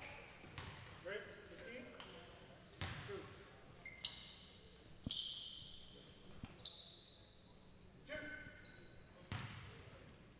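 Quiet gym sounds during a stoppage in a basketball game: a few short, high sneaker squeaks on the hardwood floor, scattered thuds of the ball bouncing, and faint voices echoing in the hall.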